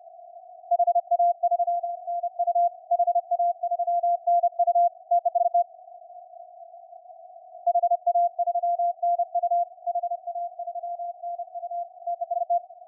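Morse code (CW) received by a SunSDR2 DX transceiver on the 20 m band: a keyed tone near 700 Hz in two runs of dits and dahs with a pause of about two seconds in between, over the faint hiss of the narrow CW filter. The decoder reads it as a station sending the callsign HA3NU.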